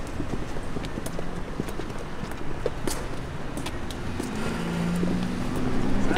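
City street sounds: a steady traffic hum with scattered sharp clicks of boot heels on a concrete sidewalk as people walk. A low steady hum swells about four and a half seconds in.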